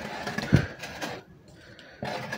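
Light rustling and scraping as organdy fabric is marked along a plastic ruler on a table, with one dull knock about half a second in, then quieter.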